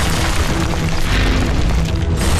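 Cartoon action soundtrack: a loud, continuous low rumble with dramatic background music over it.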